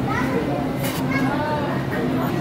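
Indistinct chatter of many voices, some of them children's, in a busy coffee shop, over a steady low hum.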